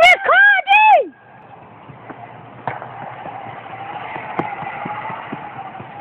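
Loud whooping shouts in the first second, then a playground zip wire's trolley running along its steel cable: a steady whirring hum that swells over a few seconds and eases near the end, with a couple of faint clicks.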